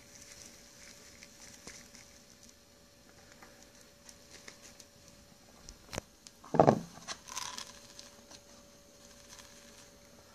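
Faint pattering and crinkling as a small scoop of gold paydirt is tipped from a plastic bag into a plastic gold pan. About six seconds in there is a sharp click, then a louder short thump as the pan is handled.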